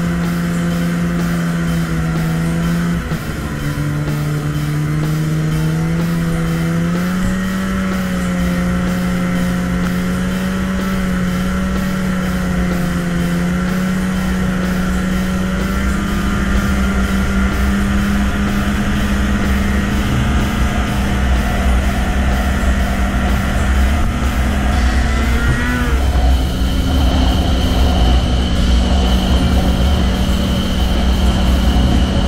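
Arctic Cat ZR 6000 snowmobile's 600 cc two-stroke engine running at a steady trail-cruising pitch. Its pitch steps down about three seconds in and back up a few seconds later, then rises briefly and drops back near the end, with wind rumbling on the helmet microphone throughout.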